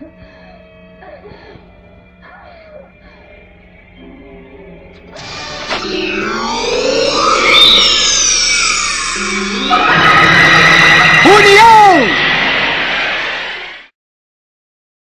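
Soundtrack of a tokusatsu fight scene played on a TV: faint voices for the first few seconds, then from about five seconds in loud electronic sound effects with quickly sweeping, zigzagging pitches over music. The effects grow denser and louder and cut off abruptly just before the end.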